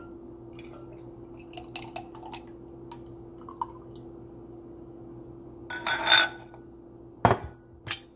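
Thick pumpkin and juice mixture poured from a bowl over ice in a glass mason jar, with faint trickling and small clinks of ice against glass. About six seconds in comes a louder ringing glassy clink, and about a second later a sharp knock.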